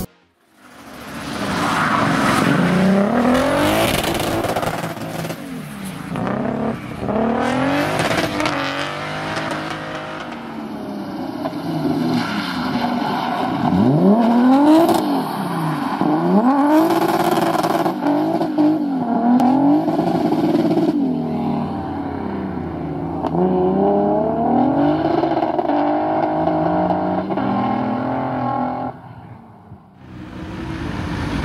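Mercedes-Benz C-Class rally car engine revving hard, its pitch rising and falling again and again through repeated gear changes and lifts as the car slides through corners. The sound fades in over the first second and drops away near the end.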